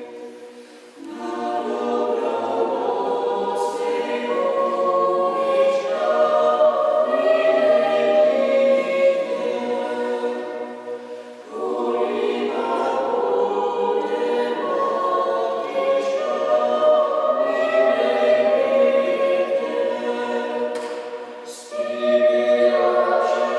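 A choir singing unaccompanied in a reverberant church, in long sustained phrases, with short breaks about a second in and again around eleven seconds in.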